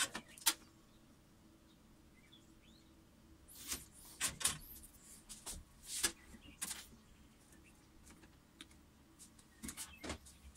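Clicks and rustles of wires and small connectors being handled on an electrical control panel during wiring: two sharp clicks at the start, a run of clicks and rustling a few seconds in, and a few more clicks near the end.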